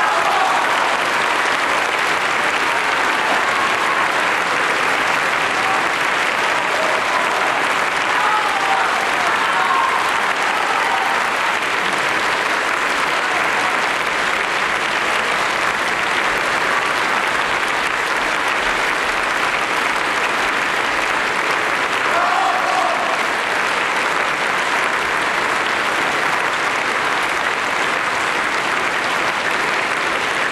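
Concert audience applauding steadily, with a few brief voices calling out in the crowd around eight seconds in and again about twenty-two seconds in.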